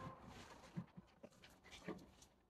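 Near silence: faint room tone with a few soft, short knocks scattered through it.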